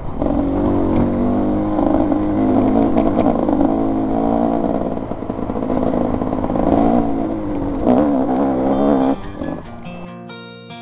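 Enduro motorcycle engine revving, its pitch rising and falling, cutting off a little after nine seconds.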